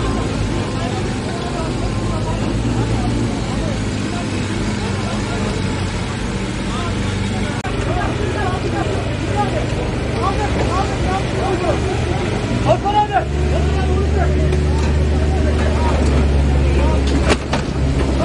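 Diesel engine of a telehandler running under load as its boom lifts a heavy overturned truck, getting clearly louder about two-thirds of the way in. Many voices chatter over it, with a couple of sharp clicks near the end.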